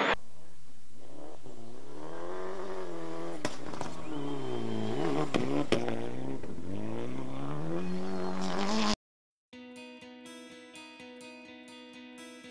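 A rally car's engine revving up and falling back several times, the pitch sweeping up and down. It cuts off abruptly about nine seconds in, and after a short gap quieter music begins.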